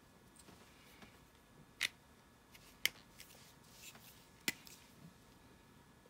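Faint handling of a plastic felt-tip marker and its cap: light rustling with three short sharp clicks, about two, three and four and a half seconds in.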